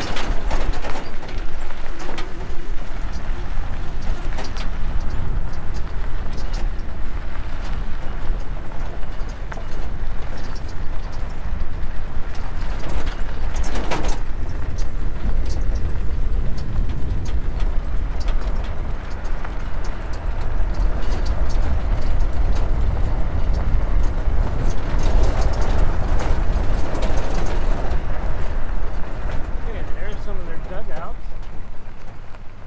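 Vehicle driving on a gravel dirt road: a steady low rumble of tyres and road noise with scattered clicks of gravel throughout, and one sharper knock about halfway through.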